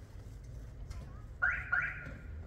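A car alarm chirping: two short electronic beeps about a third of a second apart, near the end, over a low street rumble.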